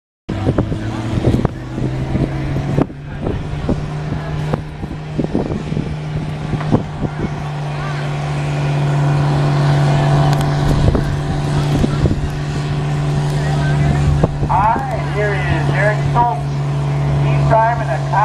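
Cockshutt 40 tractor's six-cylinder engine running steadily under load while pulling a weight-transfer sled, growing louder as it comes closer. A voice speaks over it near the end.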